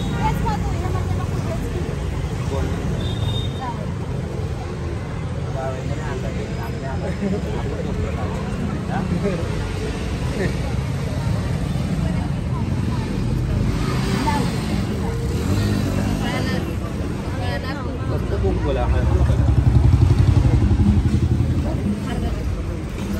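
Indistinct talk of people close by over a steady low rumble that grows louder near the end.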